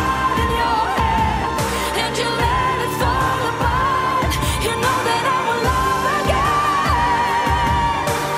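Female pop vocalist singing long, high held notes with a slight waver, live into a handheld microphone, over a full band backing with drum hits every second or two.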